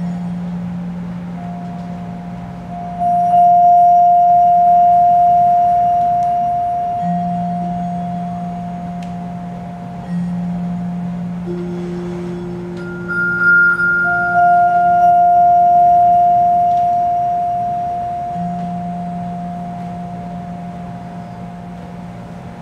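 Vibraphone notes struck softly with yarn mallets, each a pure bell-like tone that rings on and slowly fades for many seconds: one about three seconds in, then a cluster of higher and lower notes around twelve to fourteen seconds in. Under them a low sustained note from another instrument holds and re-enters several times.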